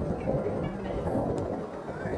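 Low, steady outdoor rumble with faint distant voices from players and spectators on a soccer field.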